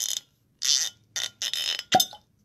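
Stopper of a Johnnie Walker Blue Label whisky bottle being twisted and worked loose: four short scraping, creaking bursts, then a sharp pop just before the end as it comes free.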